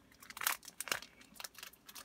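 Trading cards being handled, with soft crinkles of plastic and a few light clicks spread through the moment.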